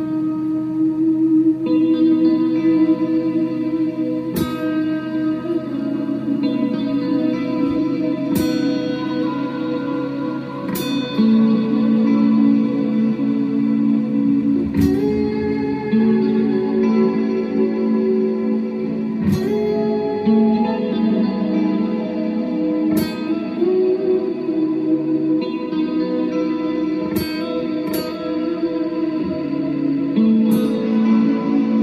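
Electric guitar played with heavy reverb and echo: slow, held ambient notes that change every few seconds, with occasional sharply picked notes ringing out over them.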